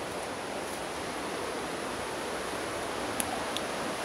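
Steady rushing outdoor background noise with no distinct events, broken only by a couple of faint clicks about three seconds in.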